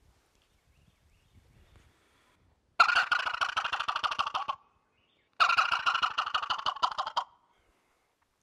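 Two turkey gobbles made on a Thunderstruck multi-reed diaphragm call by Bloodsport Game Calls, each a rapid rattling burst of just under two seconds, about a second and a half apart and starting about three seconds in. The caller's hands are cupped over his mouth as he calls.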